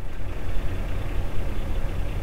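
Semi truck's diesel engine idling, a steady low rumble heard from inside the cab.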